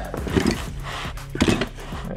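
Hand tools knocking and clinking as they are handled and shifted into an open fabric tool tote. The clearest knocks come about half a second and a second and a half in.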